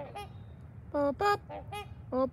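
Swans calling: a faint call at the start, then a quick run of four short nasal honks in the second half.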